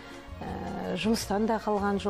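A woman speaking over background music, with a brief rough, breathy noise about half a second in before her words resume.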